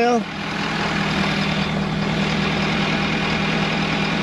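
Ford F-250 Super Duty's Power Stroke V8 turbodiesel idling with a steady hum.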